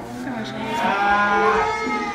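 A cow mooing in one long call that starts about half a second in.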